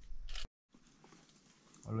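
Faint outdoor background noise, cut by a split second of dead silence about half a second in; a voice starts speaking near the end.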